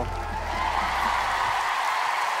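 Studio audience applauding and cheering, with a low music bed underneath that fades out near the end.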